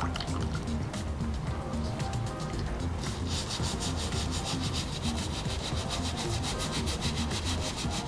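Stiff-bristled brush, wet with cleaning solution, scrubbing the rubber midsole and sole of a sneaker: a continuous scratchy bristle scrubbing, with background music.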